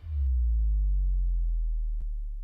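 A deep sub-bass tone that starts sharply, its upper part sliding slightly downward, and then holds and slowly fades: the closing bass hit of a broadcast intro sting.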